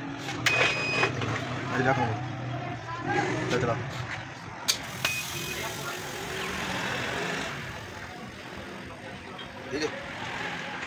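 Indistinct voices over a steady low hum, with a few sharp clicks and a stretch of hiss in the second half.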